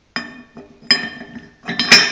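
A homemade steel bending hardy tool clanking against a cast anvil as it is set into the hardy hole. There are three metallic clinks, each ringing briefly, and the last, near the end, is the loudest.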